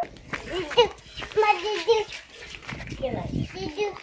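A small child's voice in short calls and babble, with a low rumble underneath.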